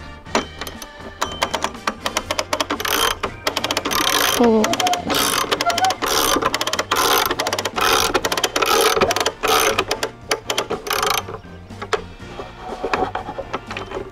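Hand-crank cable winch being cranked to raise the drop's telescoping post, its ratchet clicking rapidly in quick runs. The clicking stops about eleven seconds in. Background music plays underneath.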